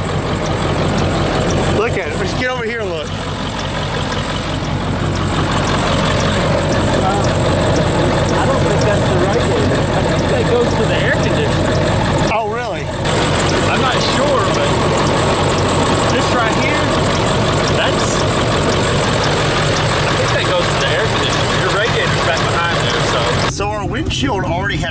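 Ford F-350 turbo-diesel pickup idling steadily.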